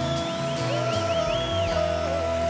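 Live concert band music in an instrumental passage: a held melody line over a bass, with a quick run of short, high, bending notes in the middle.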